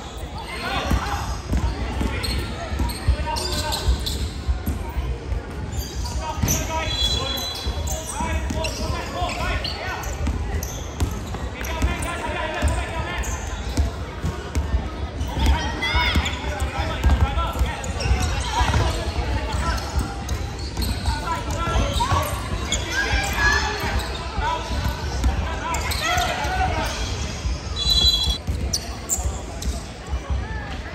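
Basketball bouncing on a wooden court during a game, with voices echoing in a large sports hall. A short, high tone sounds twice, about seven seconds in and near the end.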